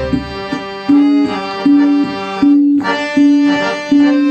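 Harmonium playing an instrumental passage of a Bengali film song, with held reed chords under a note that sounds again about every three-quarters of a second.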